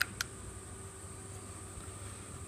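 Two short, light clicks about a fifth of a second apart at the start, then quiet room tone with a faint steady hiss.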